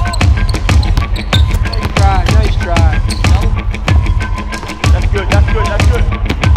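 Background music with a heavy, steady bass beat and sharp percussive hits.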